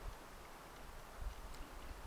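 Quiet outdoor background with a faint low rumble, and a soft, brief noise about a second in.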